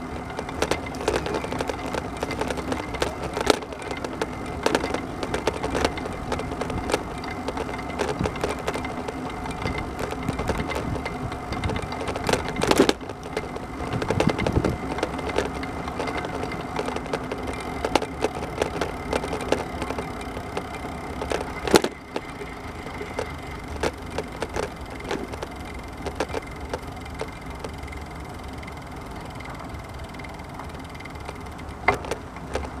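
Wheels rolling along an asphalt path: a steady rumble with continual rattling and small clicks, and sharp louder knocks at about 13 and 22 seconds in.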